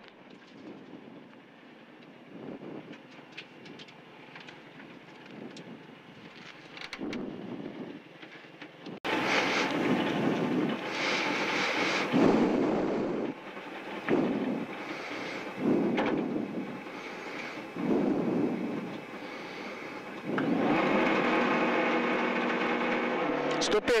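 Subaru Impreza WRX STi rally car's turbocharged flat-four engine, heard inside the cabin. It is quiet at first. From about nine seconds in it is revved hard in repeated bursts every second or two, and near the end it is held steady at high revs, as when waiting to launch from a stage start.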